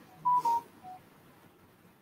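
Short electronic beeps: two loud ones in quick succession near the start, then a fainter, lower one about a second in, the pitch stepping down from one beep to the next.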